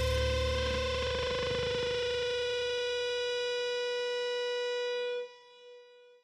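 Distorted electric guitar's final chord ringing out at the end of a rock song. The low end fades away while one held note rings on, and then the sound cuts off suddenly about five seconds in, leaving a faint tail.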